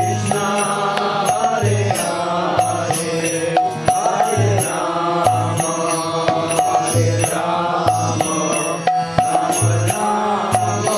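Kirtan: a man's voice chanting a devotional mantra as a sung melody over a steady rhythmic accompaniment of sharp regular percussion strikes and a repeating low note.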